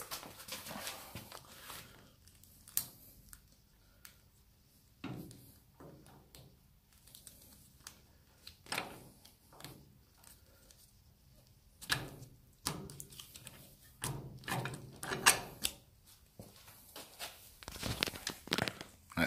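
Plastic card being forced into a trailer hitch lock's shackle to shim it open: scattered light clicks, knocks and scrapes of card and metal, with a busier run of clicks a little past halfway.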